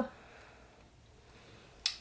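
Quiet room tone in a pause between words, with one short, sharp click near the end.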